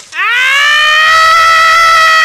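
A voice wailing in one long, loud cry that rises in pitch at the start and then holds steady on a high note: a cartoon character bawling with his mouth wide open.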